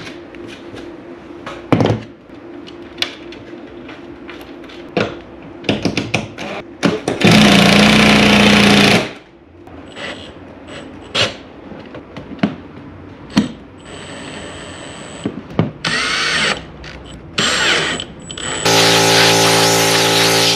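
Makita cordless drill/driver driving screws to mount a steel sub panel. It runs in several short bursts with clicks and clatter between them. The longest and loudest burst comes about seven seconds in and lasts nearly two seconds, and another starts near the end.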